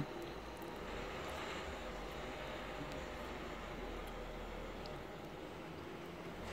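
Faint, steady low drone of distant engine noise, its low rumble swelling slightly in the middle and easing off near the end.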